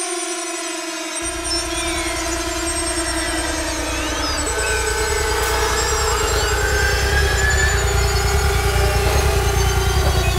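Electronic music intro: layered synthesizer drones hold steady tones that step up in pitch about four and a half seconds in, with sweeping synth effects gliding above. A fast pulsing bass line comes in about a second in.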